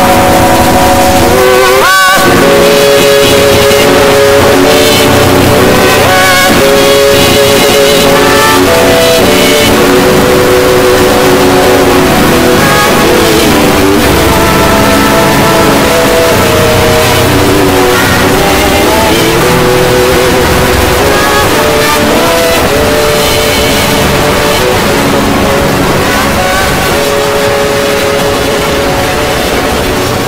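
A logo's soundtrack put through stacked "G Major"-style audio effects: many pitch-shifted copies of the same sounds play at once, giving a dense, loud, distorted wall of tones. A sharp rising glide comes about two seconds in, and the level eases down slightly toward the end.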